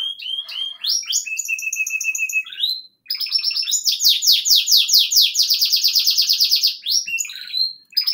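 Pet songbird singing: high whistled notes and chirps, then from about three seconds in a long, fast trill of repeated notes, about eight a second, lasting some four seconds, followed by a few more notes near the end.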